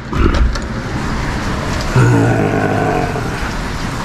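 A man sighs heavily, then about two seconds in lets out a steady, low groan lasting about a second and a half.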